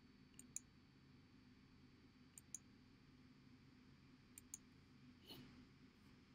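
Near silence: room tone with faint double clicks, a pair about every two seconds, and a soft brush of noise near the end.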